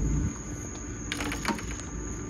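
A short run of quick light clicks and knocks about a second in, from fishing rods and reels being handled and set down, over a faint steady hum.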